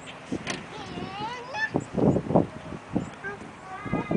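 A toddler's high-pitched vocalising and babble without clear words, with a wavering, sing-song rise and fall about a second in and short voiced bursts around two seconds in.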